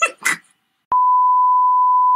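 A television test tone, the steady single-pitched beep that goes with colour bars, cutting in abruptly with a click about a second in.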